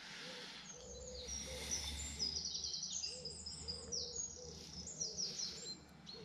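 Wild birds singing: quick bursts of high chirping and trilling songbird notes over a low, repeated cooing, with a faint steady low rumble underneath.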